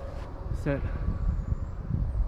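A low, steady rumble in the background, with one short spoken word about half a second in.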